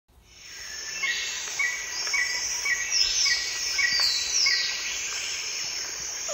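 Forest ambience of birds and insects fading in: a steady high insect hiss. Over it, one bird repeats a short high note about twice a second for the first few seconds, and falling whistled phrases follow.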